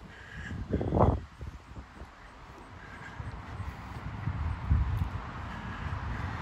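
Wind buffeting the microphone outdoors, a low uneven rumble with a strong gust about a second in and another near five seconds. A crow caws faintly near the start.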